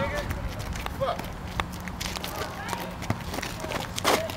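Players' voices calling over an outdoor court, with a few scattered knocks of a basketball bouncing and sneaker steps on asphalt.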